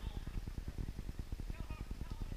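Wind rumbling on the microphone in an open field, with a faint distant voice calling out near the end.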